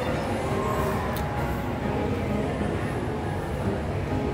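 Steady din of a busy fast-food restaurant: a low rumble with faint indistinct voices in the background, and a brief click about a second in.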